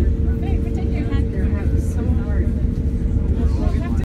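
Waterfront ambience dominated by a heavy, uneven low rumble of wind on the microphone, with people's voices talking in the background and a faint steady hum.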